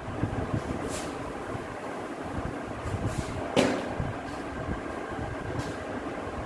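Steady low background rumble, with a few brief clicks and knocks and one short, sharper sound about three and a half seconds in.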